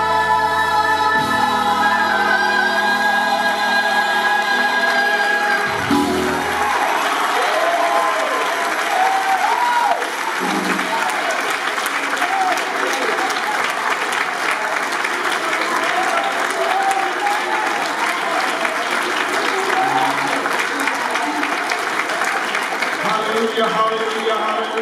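A saxophone holds its final long notes over sustained accompaniment, ending about six seconds in. Then the congregation applauds steadily, with voices calling out and singing over the clapping.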